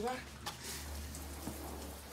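Water spraying from a garden hose nozzle into a plastic barrel as it starts to fill. A steady hiss of spray begins about half a second in.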